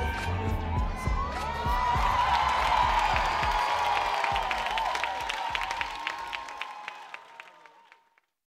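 Theater audience cheering and whooping over the closing bars of hip-hop dance music, with applause starting a few seconds in. The music's bass drops out about six and a half seconds in, and the cheering and clapping fade away near the end.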